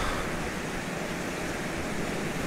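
Steady rush of falling water, spilling over a mill dam and pouring onto a large steel overshot water wheel.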